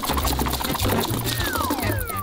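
Battery-powered toy centipede crawling, its motor and moving legs making a rapid mechanical rattle over background music. A descending whistle slides down in the second half.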